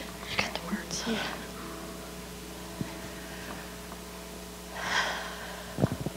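Faint whispering close to a microphone, in two short breathy bursts, over a steady electrical hum, with a short thump near the end.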